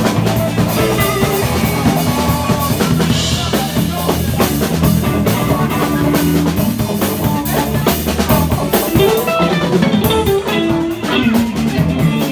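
Live blues band playing an instrumental break: drum kit with rimshots keeping a steady beat under bass and a melodic guitar lead.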